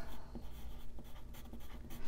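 Wooden pencil writing numbers on a paper budget sheet: a soft graphite-on-paper scratching.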